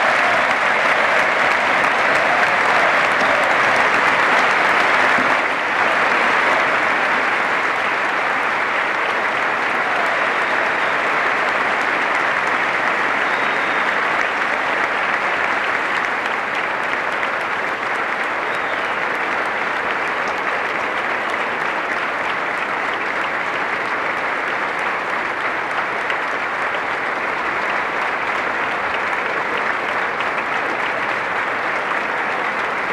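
A large audience clapping, sustained applause as an ovation at the close of a speech, loudest for the first five seconds or so and then steady.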